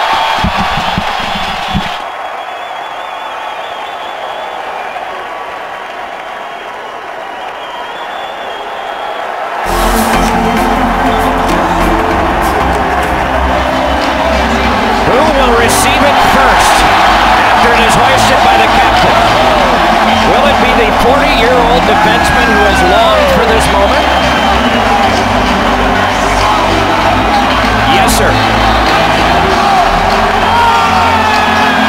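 Arena crowd cheering. About a third of the way in, loud music with a steady beat comes up over the cheering, with whoops and shouts from the crowd.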